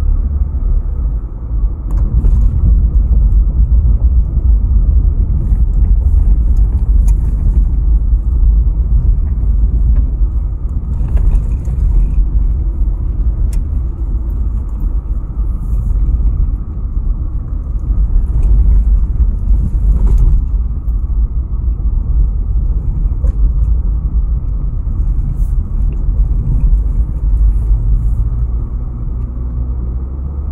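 Steady low rumble of a car driving along a road, heard from inside the car: engine and tyre noise, easing slightly near the end.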